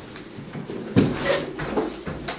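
A single sharp knock, about a second in, as things are handled, with lighter handling noise around it.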